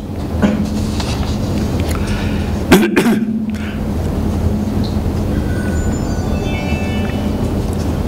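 Steady low rumble and hum, with one short cough about three seconds in.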